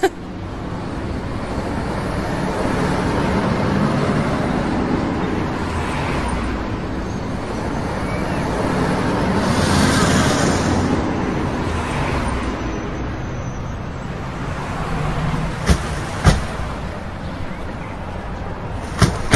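Old saloon car driving: a steady engine and road rush that swells about halfway through. Near the end come two sharp clicks of car doors being opened.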